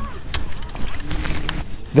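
Wind rumbling on the microphone aboard a fishing boat on open water, with a sharp click at the start and a faint brief hum about a second in.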